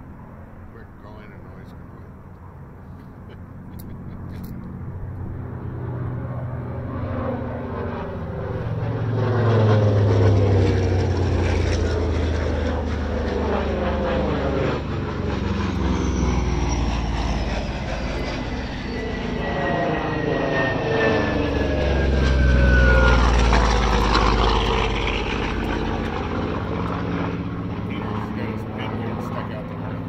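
Propeller-driven warplanes making a low flyby: the engine sound builds to a peak about ten seconds in, eases, then peaks again a little past the twenty-second mark, and the pitch falls as the aircraft go past.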